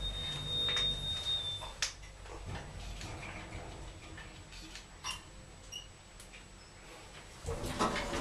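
Stannah passenger lift car travelling. A low hum with a high steady tone runs for about the first two seconds, then come scattered clicks. Near the end the sliding door opens and the noise rises.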